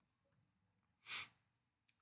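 Near silence broken once, about a second in, by a single short breath close to the microphone.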